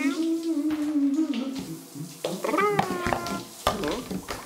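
A cartoon cat's voice, a person imitating a cat, makes a long wavering mew-like vocal sound and then a second shorter one. Around three seconds in come a few sharp knocks and a clatter as a bowl and toiletry bottles are knocked off the windowsill.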